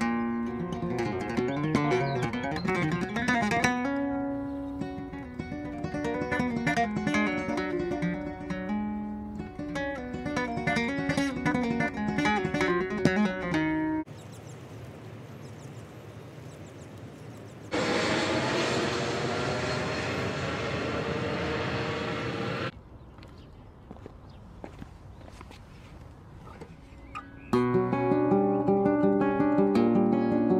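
Solo flamenco guitar, plucked melodic passages with chords. It breaks off after about fourteen seconds into quieter outdoor background, with a louder rushing sound of falling pitch lasting about five seconds. The guitar comes back in near the end.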